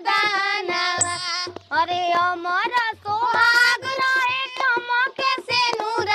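A song with a high-pitched voice singing long, wavering notes over instrumental accompaniment with a steady low beat.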